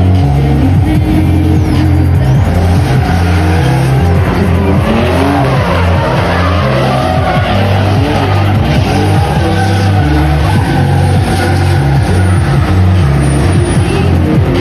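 BMW E36 drift cars sliding, engines revving up and down and tyres squealing, over background music with a stepping bass line.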